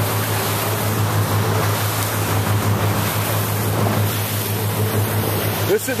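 Boat running under engine power: a steady low engine hum under the wash of water along the hull and wind noise.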